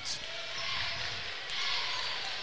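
A basketball being dribbled on a hardwood gym floor over a steady hum of crowd noise in the gym.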